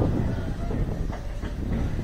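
Kingda Ka's steel roller coaster train rolling slowly on its track toward the station: a steady low rumble of the wheels with a few faint clacks.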